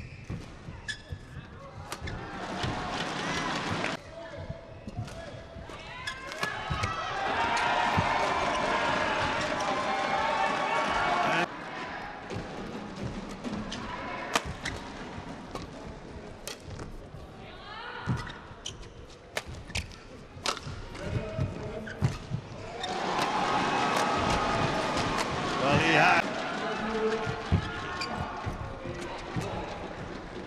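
Badminton rallies: sharp racket hits on the shuttlecock and shoes thudding and squeaking on the court. Between them an arena crowd cheers and shouts after points, loudest from about six to eleven seconds in and again from about twenty-three to twenty-seven seconds.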